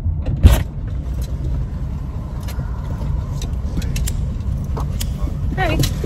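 Idling car engine heard inside an SUV's cabin as a steady low rumble, with a sharp clunk about half a second in as the passenger door is opened, then small knocks and rustles as someone climbs into the seat.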